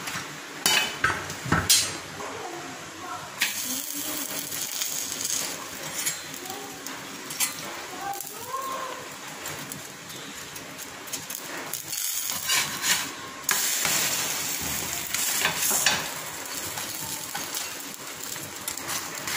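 Paratha dough sizzling on a hot iron tawa, with a few clinks and scrapes of a metal spatula. The sizzle is loudest about three-quarters of the way through.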